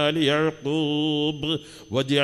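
A man chanting a supplication in a slow, melodic voice, holding one note for about a second before a short pause near the end.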